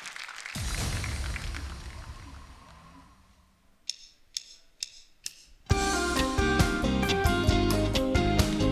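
A low boom that fades away over about three seconds, then four sharp stick clicks counting in, and a live band kicks into the song with drums and strummed guitar about six seconds in.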